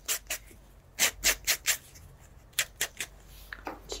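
Nail buffer block rubbed briskly back and forth over toenails: short rasping strokes in quick runs of a few, with brief pauses between.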